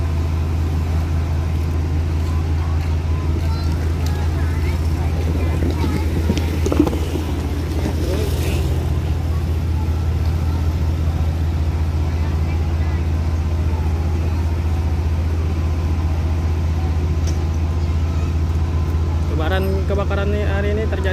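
Fire truck engine running steadily under load as the aerial ladder is raised, a constant low drone. Voices are faintly heard in the background.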